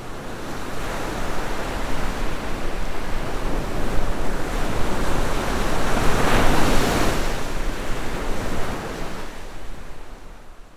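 Ocean surf breaking against rocks: a rushing swell of wave noise that builds to its loudest just past the middle, then fades away near the end.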